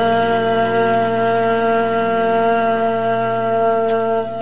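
A singer holding one long, steady sung note at the end of a line of a Malay pop ballad, over the karaoke backing track.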